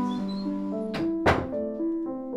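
Soft music of sustained keyboard notes, with two thuds a little after a second in, the second one louder: a door being shut.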